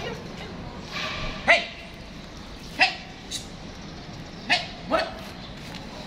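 A pitbull giving about five short, high yelps, each rising quickly in pitch, spread over a few seconds.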